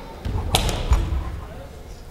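A sharp slap about half a second in, then a heavier thud, from the fencers' sparring in a sports chanbara bout on a wooden gym floor.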